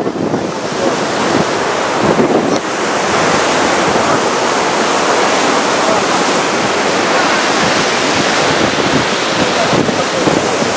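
Rough storm surf breaking on the beach and groyne, mixed with strong wind buffeting the microphone: a loud, continuous rush of noise that dips briefly about two and a half seconds in and then holds steady.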